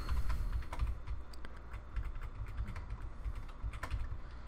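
Computer keyboard keystrokes: quick, irregular clicks of keys being pressed while lines of code are deleted, over a low steady hum.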